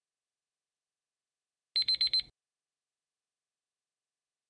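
Quiz countdown-timer alarm: four quick high-pitched beeps in about half a second, a little under two seconds in, marking the time running out. Silence otherwise.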